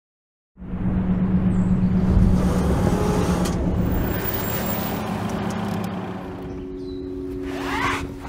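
Car driving on a dirt forest track, heard from inside the cabin: steady engine and road noise that starts suddenly about half a second in. Its low hum shifts in pitch a little past halfway, and a brief rising sound comes just before the end.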